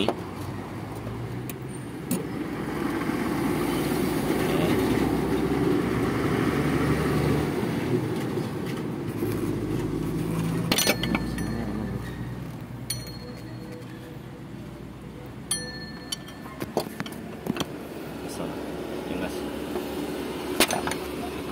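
Steel pry bar and tools clinking against the engine as it is levered up to make room for a new timing belt: a few sharp metallic clinks in the second half, some ringing briefly. A low rumble swells and fades in the first half.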